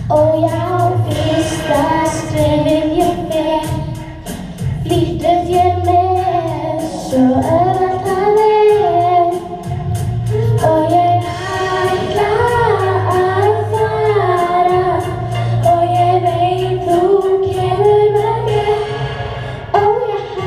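Children singing a song on stage over instrumental accompaniment with a steady bass line.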